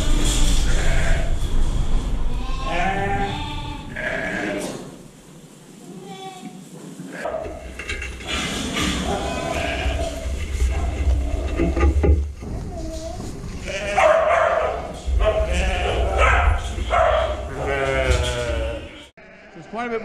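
A flock of sheep and lambs bleating, many calls, some overlapping, with a low rumble underneath at times.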